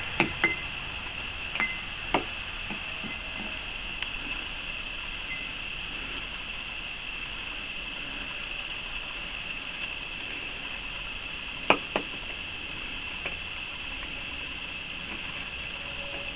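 Steady high-pitched song of night insects, with a few short knocks scattered through it, two of them in quick succession about twelve seconds in.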